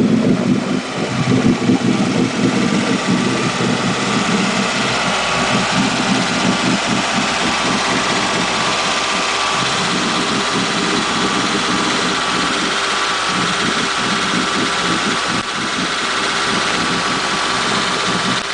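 Freshly rebuilt Ford small-block V8 inboard of a 1992 Ski Nautique, built with GT40P heads, a new cam and intake and stainless exhaust, idling steadily on its first run after the rebuild. It is heard first at the transom exhaust outlets over churning water, then from the open engine bay.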